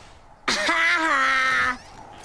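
A voice giving one long drawn-out whining groan, held on a single note that sags slightly in pitch for about a second and a quarter. It starts about half a second in.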